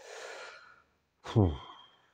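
A man's breathy sigh, a resigned exhale after calling the beer not worth drinking. About a second later comes a short, low, falling vocal sound.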